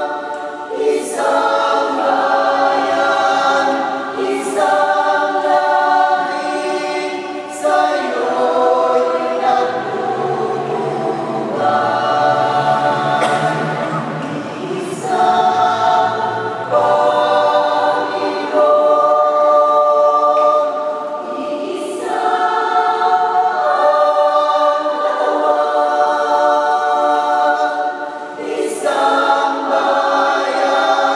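Mixed church choir singing a Tagalog communion hymn in sustained, changing chords.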